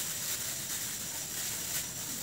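Thin white plastic shopping bags rustling and crinkling as they are handled.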